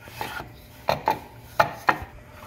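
Wooden rolling pin rolling out a thin sheet of dough on a wooden board: rubbing with sharp wooden knocks, four strong ones in two quick pairs.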